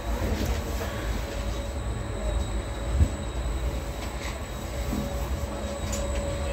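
Low, steady mechanical rumble of a moving Ferris wheel, heard from inside a gondola near the bottom of its turn, with a faint steady whine over it and a single knock about three seconds in.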